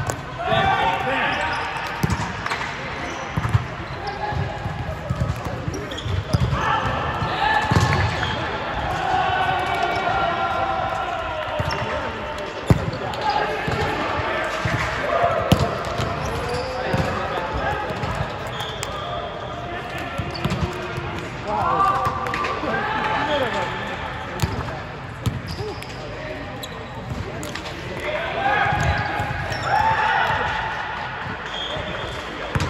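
Indoor volleyball being played: the ball is struck by hands and arms and hits the court floor in a series of sharp slaps and thuds, mixed with players' shouted calls and chatter.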